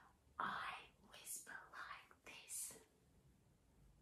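Quiet whispered speech: a few short breathy whispered words.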